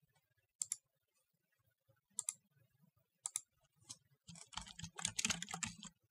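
Typing on a computer keyboard: a few separate clicks over the first four seconds, then a quick run of keystrokes for the last two seconds as a search term is typed in.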